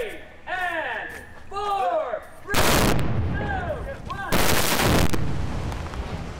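Two staged pyrotechnic explosions: two heavy blasts, the first about two and a half seconds in and the second just past four seconds, each lasting well under a second and trailing off in a long rumble. Before and between the blasts come repeated short cries that rise and fall in pitch.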